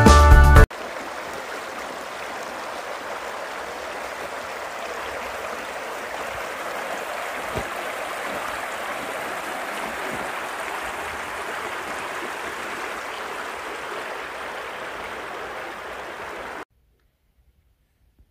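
A shallow stream running steadily, an even rush of flowing water that cuts off suddenly near the end. Music plays briefly at the very start and stops abruptly.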